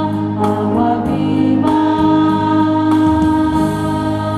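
Choir singing a Spanish hymn, with long held notes.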